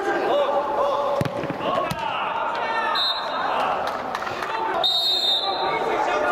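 Football players shouting and calling to each other during indoor play, with a few sharp thuds of the ball being kicked, in a large inflated dome hall.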